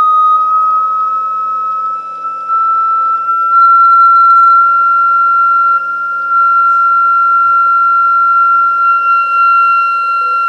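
A pure sine test tone, rising slowly in pitch, played through two thin flat-panel plates driven by audio exciters, one square and one asymmetrical. Its loudness swells and dips as the sweep passes the plates' resonance peaks.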